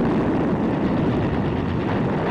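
Battle sound effect: a loud, dense rumble that starts abruptly out of silence and holds steady.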